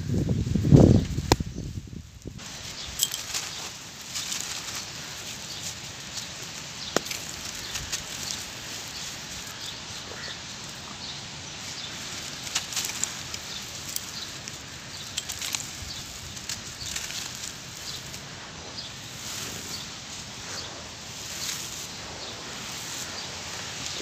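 Dry, gritty charcoal-ash lumps crumbling between bare hands, with a steady fine crackle of grains and dust sifting down onto the powdery floor. There are louder low rumbles and thumps in the first two seconds.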